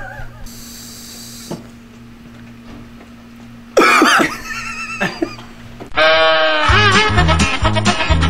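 A man's drawn-out, wavering vocal cry of disgust about four seconds in, after a low steady hum, and then music with a steady beat starts about six seconds in.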